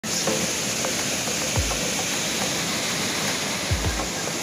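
Steady rushing hiss of Burney Falls, a tall waterfall pouring into its pool. Brief low thumps come about one and a half seconds in and again near the end.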